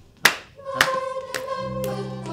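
Hands clapping in a steady beat: four claps about half a second apart, the first the loudest. Held sung notes come in about half a second in.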